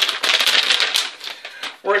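Sheets of paper rustling and flapping as they are waved close to the microphone: a dense, rapid crackle that stops just before a man starts speaking near the end.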